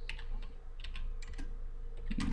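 Computer keyboard being typed on: an uneven run of quick key clicks as a few letters are entered.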